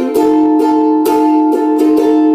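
Ukulele strummed in a steady rhythm with no singing, changing to a new chord right at the start.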